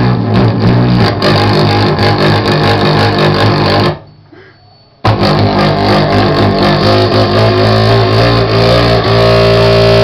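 Loud live noise music from an amplified band: a dense wall of distorted sound that cuts out almost completely for about a second midway, then comes back. Near the end it settles into steady droning tones.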